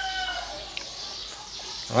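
A rooster crowing in the background, its long held note fading out about half a second in, followed by a single light click.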